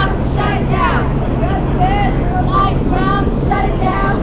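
A crowd of protesters with many voices chanting and calling out at once, overlapping with no break, over a low steady hum.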